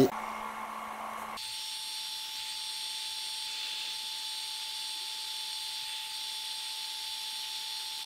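Two portable dual-laser engravers (xTool F1 and LaserPecker 4) running an engraving job on aluminium: a steady low hum that switches about a second and a half in to a steady higher whine with a hiss over it, as the footage jumps to a fast-forwarded stretch.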